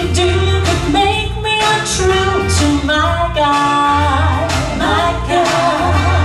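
Female vocal trio singing a 1950s–60s girl-group song in close harmony, over an instrumental accompaniment with a pulsing bass line.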